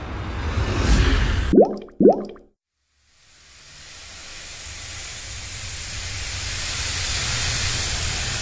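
Intro sound effects: a rumbling rush of noise that builds, broken off by two quick rising bloop tones half a second apart. After a moment of silence, a hissing wind-like noise swells up slowly.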